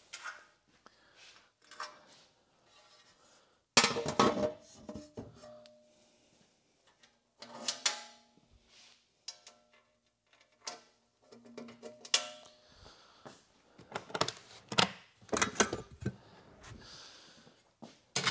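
Irregular clanks and knocks of metal camp-kitchen gear being handled as a fold-down table and slide-out kitchen unit are set up, several strikes leaving a short metallic ring.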